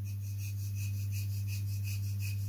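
Faint rhythmic rasping of a balsa wood rib being rubbed against a sanding block, about three to four strokes a second, under a steady low hum that is the loudest sound.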